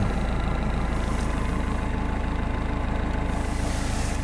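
GAZelle van's Cummins four-cylinder turbodiesel running steadily, an even low hum heard from inside the cab.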